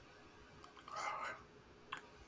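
Faint: a short breathy, whisper-like voice sound about a second in, then a single mouse click near the end.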